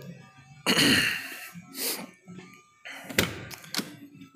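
Car door being opened on a 1970 VW Beetle: rustling handling noise, then two sharp clicks of the latch and door about half a second apart near the end.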